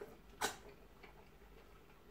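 Two short wet mouth clicks as a handful of fufu with ogbono soup goes into the mouth, a faint one and then a sharper one about half a second in.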